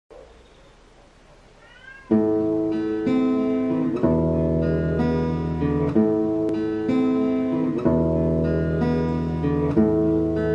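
Acoustic guitar strumming chords, starting about two seconds in, with a strum roughly every second.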